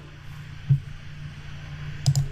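A single computer mouse click about two-thirds of a second in, over a steady low electrical hum and hiss.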